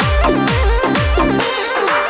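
Instrumental break of a Rajasthani DJ dance song: heavy electronic bass hits that fall in pitch, about two a second, under a bending synth melody. The bass drops out briefly near the end.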